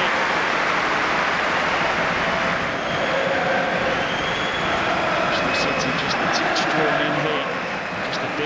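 Football stadium crowd noise: a steady din of many voices with scattered shouts, and a few short sharp knocks between about five and seven seconds in.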